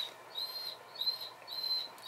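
Three short, high whistling chirps in quick succession, all on about the same pitch.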